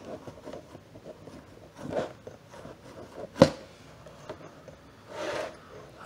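Fingers rubbing and wiping paint off a plastic Stormtrooper armor piece in a few short strokes, with one sharp tap about three and a half seconds in.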